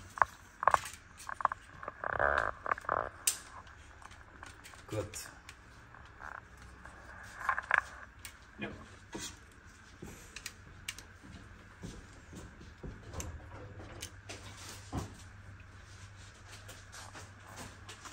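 Scattered light clicks, taps and knocks of kitchen handling as dry lasagne sheets are laid into glass baking dishes, with a few louder bursts of clatter, over a faint steady low hum.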